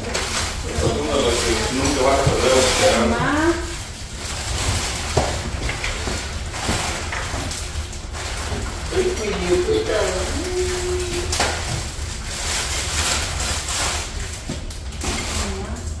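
Indistinct chatter of several people in a room during a home meal, with scattered light clinks of dishes and utensils over a steady low hum.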